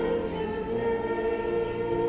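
Three women singing a hymn together into handheld microphones, holding long notes.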